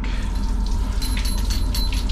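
Faint water running at a sink, starting about a second in, over a steady low room hum.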